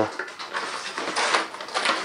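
Plastic banding straps rustling and scraping as they are handled and laid on the floor, with a few light clicks.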